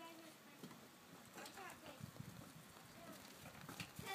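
Very quiet, with faint distant voices now and then.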